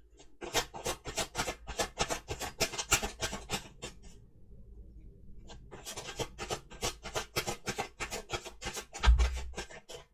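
A tarot deck being shuffled by hand: two runs of quick papery card clicks, several a second, with a short pause between them and a low thump near the end.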